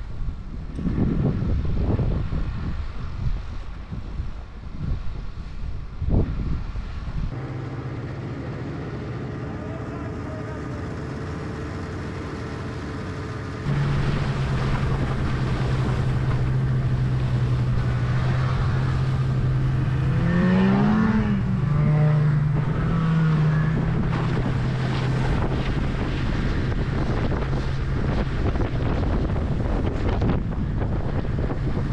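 Wind buffeting the microphone, then a snowmobile engine running steadily while towing a sled. It gets louder about halfway through, and its note rises briefly and falls back about two-thirds of the way in.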